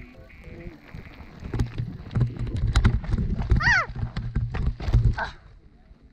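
Mountain bike riding over a rocky dirt trail, picked up by the handlebar camera: a rumble with rapid rattling knocks from the tyres and frame hitting stones, loudest from about a second and a half in until about five seconds.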